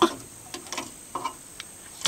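Metal radiator cap being twisted off the filler neck of an M35A2 deuce-and-a-half: a sharp click at the start, then a few faint metallic ticks as it turns.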